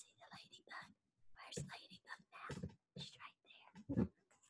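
A woman whispering in short, faint phrases, with one brief louder sound right at the end.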